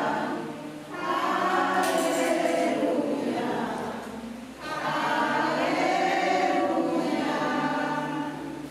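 A congregation singing a hymn together, many voices in sung phrases, with short breaks about a second in and about four and a half seconds in.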